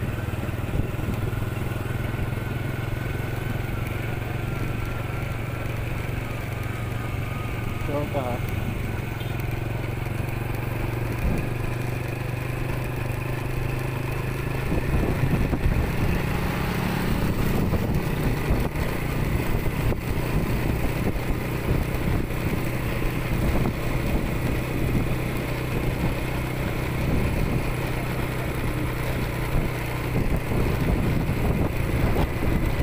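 Motorcycle engine running steadily while riding, with wind on the microphone. It gets louder and rougher about halfway through.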